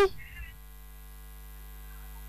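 Steady electrical hum on an open telephone line, a low buzz with many overtones, while the caller's line is connected but silent. A faint voice is heard briefly at the very start.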